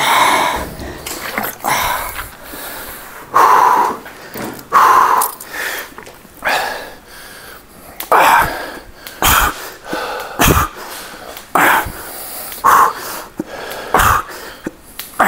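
A man's loud, forceful breathing under heavy effort: short hard exhalations, about one every second or so, as he works through a set of overhead barbell triceps extensions.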